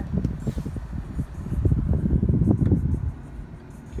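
Handling noise from a hand-held camera being moved: an irregular low rumble with soft knocks, loudest in the middle. Under it is a steady hum from the car's climate-control fan.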